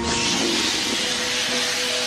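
A rushing, hissing whoosh sound effect for a CGI comet in space, setting in suddenly and slowly thinning out over faint held tones of background music.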